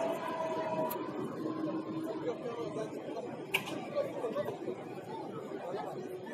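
Chatter of many people's voices in a busy pedestrian square, with one sharp click about halfway through.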